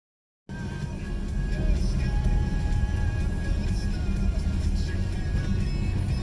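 Tyre and road rumble heard from inside the cabin of an electric VW ID.3 driving through an underpass, with music playing over it. The sound begins about half a second in.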